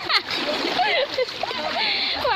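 Water splashing as people crawl and wade through a shallow, muddy channel of floodwater, with voices over it.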